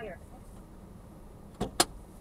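A dispatcher's voice ends on the word 'fire' over a radio; then, near the end, two sharp clicks follow each other about a fifth of a second apart.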